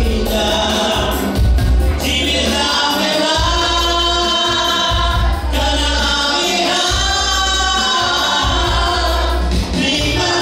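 Gospel worship song sung over electronic keyboard accompaniment, with long held notes and strong bass.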